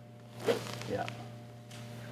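Golf club swinging through and brushing across a hitting mat, one short brushing sound about half a second in.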